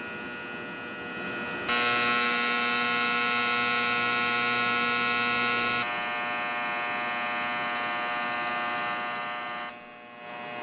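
A steady electrical hum made of many fixed tones. It steps up louder about two seconds in, changes its mix of tones about six seconds in, and drops away briefly near the end.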